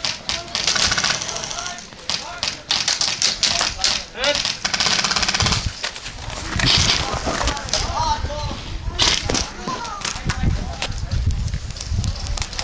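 Airsoft guns firing rapid full-auto bursts of evenly spaced clicks: one burst just after the start and a longer one about four seconds in, with shouting voices between and after.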